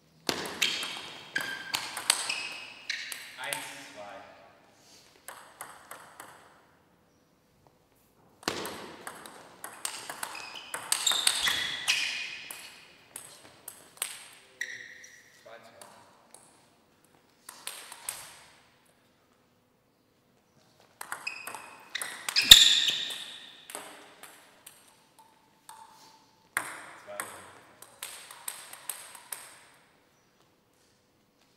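Table tennis rallies: the plastic ball clicking off the bats and the table in quick back-and-forth exchanges. It comes in about five bursts with short pauses between points, and the loudest, sharpest hit falls a little after the middle.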